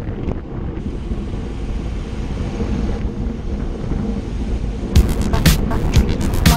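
Wind rumbling on an action camera's microphone while riding a road bike at speed. Background music plays under it, and from about five seconds in a sharp beat of roughly two strokes a second comes in.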